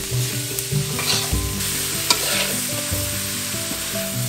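Mangrove snails (bia) sizzling as they are stir-fried in a metal wok, with a few short scrapes of the spatula about half a second, one second and two seconds in.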